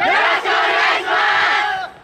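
A large group of dancers shouting "yoroshiku onegaishimasu" together in unison, their formal greeting to the audience. It is one loud call in three parts that cuts off just before the end.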